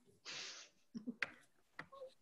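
A short, faint breathy hiss, like an exhale, followed by a few sharp, faint clicks over the video-call audio.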